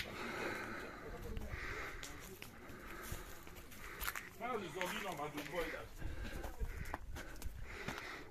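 Faint voices of people talking in the background, not close to the microphone, with a few brief clicks.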